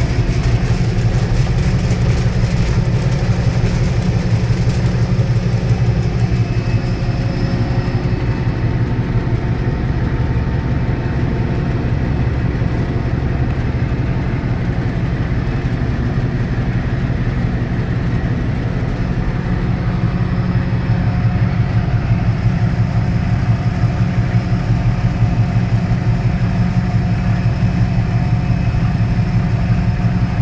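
Diesel locomotive engine running steadily, heard from inside the cab as a deep pulsing drone. It grows slightly louder about two-thirds of the way through.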